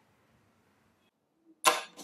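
Near silence, then a single sharp, loud knock on a front door about a second and a half in.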